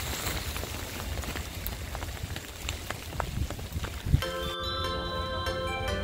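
Steady rain noise with scattered sharp drop ticks, heard while walking through wet grass. About four and a half seconds in it cuts off suddenly and background music with held notes takes over.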